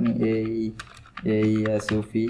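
Computer keyboard being typed on, a handful of separate key clicks, with a man talking over them in two short stretches.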